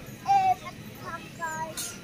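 A child's high-pitched voice: a short, loud call or sung note just after the start and softer ones about one and a half seconds in, with a brief hiss near the end.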